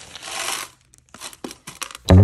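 A plastic bag rustling, then a few light clicks as small cut glass mosaic pieces tip out of it onto the board.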